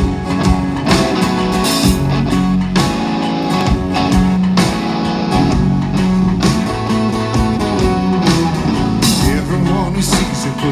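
A live rock band plays an instrumental intro on acoustic and electric guitars, electric bass and a drum kit, with a steady beat.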